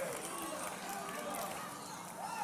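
Scattered, distant voices of a congregation calling out responses in a reverberant church hall, quieter than the preaching around them.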